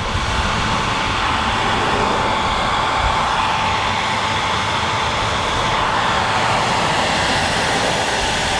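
Handheld hair dryer running on its highest heat setting, a steady rush of air with a thin steady whine, blowing hot air onto a vinyl wrap to soften it for peeling.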